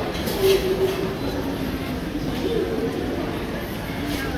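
Ambience of a busy airport terminal concourse: indistinct voices of passers-by over a steady background rumble.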